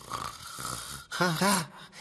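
A cartoon character snoring in his sleep for about a second, then a short voiced "ah" just after a second in.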